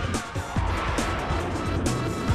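Television show opening theme music with a strong, steady drum beat and several quick downward-sliding sounds.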